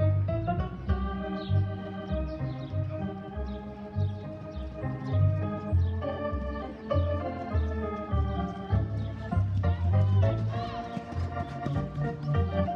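Organ music played over loudspeakers, sustained chords over a repeating bass pulse.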